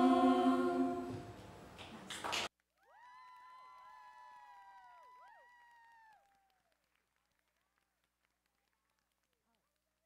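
Girls' choir holding a final chord that fades from about a second in. A brief burst of noise follows, then the sound cuts off suddenly. Faint wavering tones remain for a few seconds before silence.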